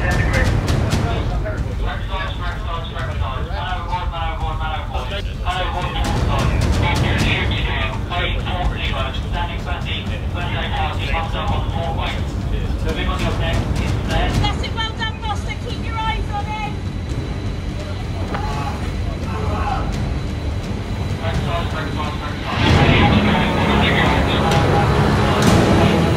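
Steady low rumble of wind and ship noise on deck, with indistinct voices over it. About 23 seconds in it turns louder and rushing.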